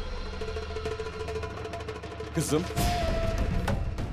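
Dramatic background score music with held tones and a few drum strikes past the middle.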